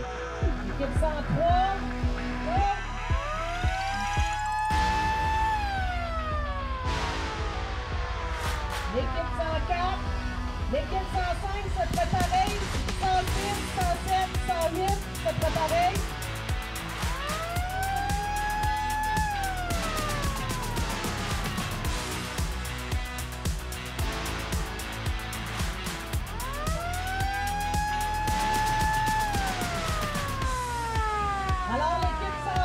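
Electronic background music with a steady bass line and beat. Three times a two-note tone swoops up, holds for about two seconds and glides back down, like a siren.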